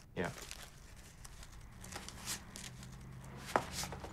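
Rustling and crinkling of a case and papers being handled on a desk, with a sharp click about three and a half seconds in.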